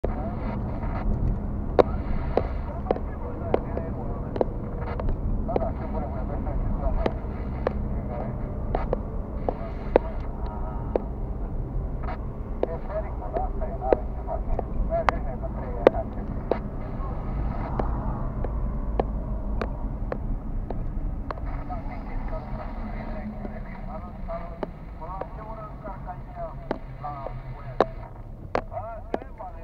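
Car cabin noise while driving: a steady low engine and tyre rumble with frequent sharp clicks and small knocks. The rumble eases near the end as the car slows behind traffic.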